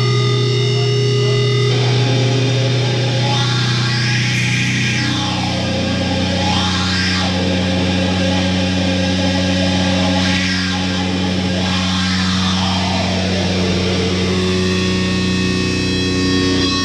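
Heavily distorted electric guitar holding long droning notes that change about two and five seconds in, with noisy swooping sweeps rising and falling over them every few seconds.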